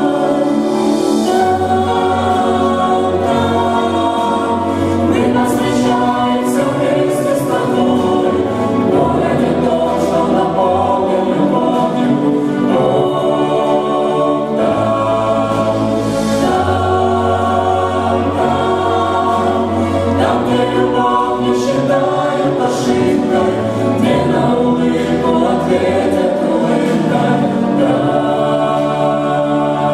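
A mixed vocal group of men and women singing a slow Christian song in harmony through microphones, with a low men's bass line under the sustained chords.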